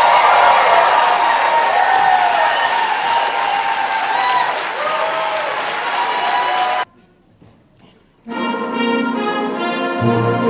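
Audience applauding, cut off suddenly about seven seconds in. After a short, much quieter gap, a concert band starts playing, with brass prominent.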